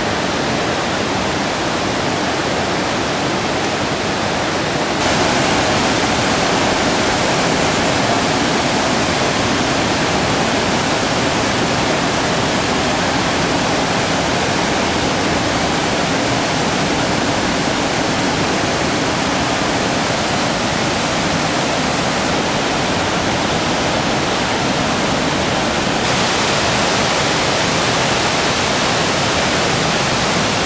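Water rushing over small waterfalls and cascades, a loud, steady noise of falling and tumbling water. It jumps louder and brighter about five seconds in and shifts abruptly twice more near the end.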